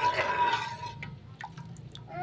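Metal slotted spatula stirring thin sauce in a pan: liquid sloshing and dripping, opening with a sharp knock of the spatula against the pan and a brief steady tone that fades within a second, with one lighter click a little past halfway.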